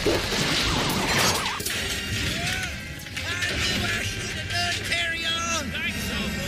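Several remix soundtracks layered over one another: music mixed with chopped, repeated voice clips. A noisy, crash-like burst fills the first second and a half.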